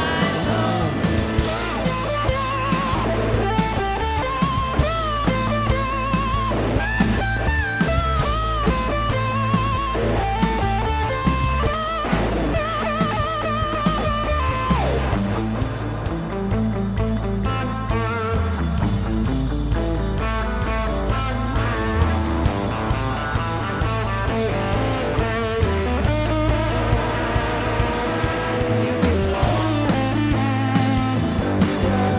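Live blues-rock band playing loudly: electric guitar and drum kit over a steady bass line, with a wavering lead melody that bends up and down in pitch.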